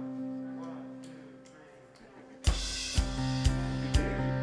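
Opening of a worship song. A held keyboard chord fades away, then about two and a half seconds in the full band comes in, with a kick drum beating about twice a second.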